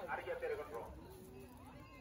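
Faint background voices, speech-like in the first half-second and then faint drawn-out, wavering tones over a low hiss.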